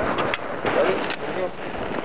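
Indistinct, muffled voices over a steady rush of wind noise on the microphone; no gunshot.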